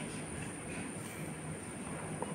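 Steady low rumble of indoor background noise with a faint, thin high-pitched whine running through it.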